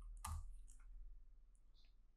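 Faint clicks of a computer keyboard being typed on: one clearer click about a quarter second in, then a few lighter ticks, over a faint low hum.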